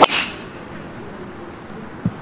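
Driver striking a golf ball off the tee: one sharp, loud crack right at the start, trailed by a brief hiss, then only low background sound.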